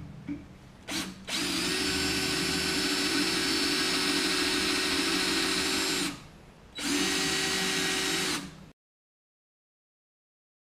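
Cordless DeWalt drill driving a twist bit into a steel tube. A brief blip comes about a second in, then the drill runs steadily at one pitch for about five seconds, pauses, runs again for about a second and a half, and cuts off suddenly. The bit is opening up a hole that a broken annular cutter left partly cut.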